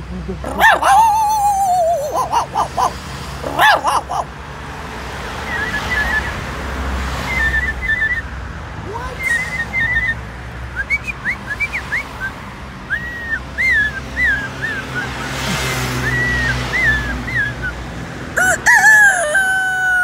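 A man imitating a rooster crowing with his voice: loud calls with long falling glides in the first few seconds, then again near the end. In between come quieter, short, high chirps and whistles over a steady low traffic rumble.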